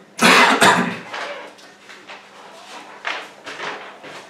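A person coughing twice in quick succession, loud, then a few fainter short sounds.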